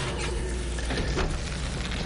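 Chicken sizzling in a skillet, a steady hiss, with a couple of knocks, near the start and about a second in, as a baking dish is taken out of the oven.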